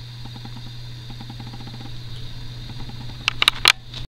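Steady low hum with faint handling rustle, then four sharp clicks in quick succession near the end as the revolver is handled and set down.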